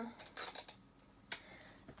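Hands handling small craft items such as scissors and tape: a short scratchy rasp, then a sharp click a little past one second in and a couple of faint ticks.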